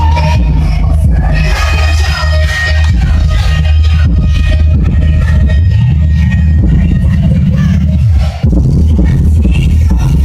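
Loud music with heavy bass played through a Logitech Z-5500 5.1 speaker system and its subwoofer, with a brief break about eight seconds in.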